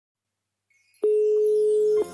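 Telephone dial tone: silence, then a loud steady single-pitched tone starting about a second in, opening a song built around an unanswered phone call.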